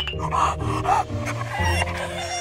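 Upbeat background music, with a few short sounds from a small dog over it: a puppy.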